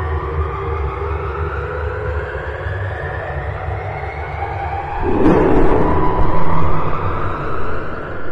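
Logo-intro sound effect: a low rumble under a slowly rising pitched tone, swelling louder about five seconds in.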